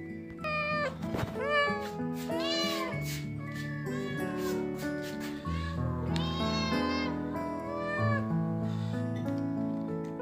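Hungry kittens meowing again and again, about ten high, arching calls, over background music with long held notes.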